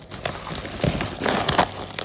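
Rustling and crinkling of a woven polypropylene sack of dried maize kernels as it is handled by hand, in irregular short crackles.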